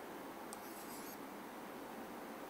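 A pen tip taps once on a writing board, then scratches across it for about half a second, a faint high rubbing over a steady low hiss of room noise.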